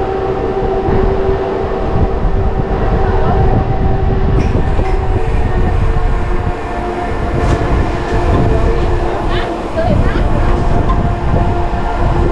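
Swinging glider ride in motion: a continuous loud rumble with a steady whine from the ride's machinery as the gondola travels around its circuit.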